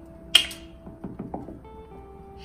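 Soft background music with sustained notes. About a third of a second in comes a single sharp plastic snap from the cap of a small craft paint bottle being opened, then a few faint clicks as the bottle is handled.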